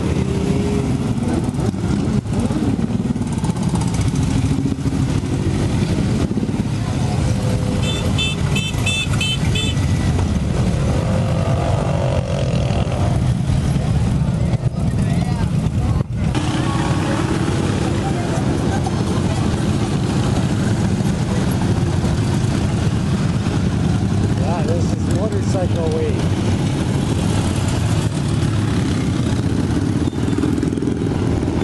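Many motorcycles and ATVs running past in a parade: a dense, steady mass of engine noise with crowd voices over it. About eight seconds in, a quick run of short high beeps cuts through for a couple of seconds.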